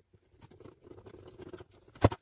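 Screwdriver turning a small screw into the sheet-metal chassis of a car radio head unit: a faint, scratchy run of small ticks lasting about a second and a half.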